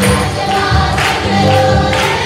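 Group of voices singing a Christian worship song with a live band: keyboard, bass notes and drums keeping a steady beat about twice a second.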